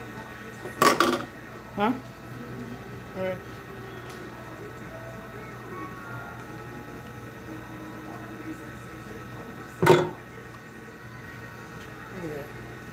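Knocks of a plastic ink tub and spatula being handled as blue plastisol ink is scraped into it: a sharp knock about a second in and a louder one near the end, over a steady low hum.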